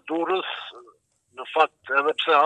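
A man speaking Albanian over a telephone line, the voice thin and narrow-band, with a short pause about a second in.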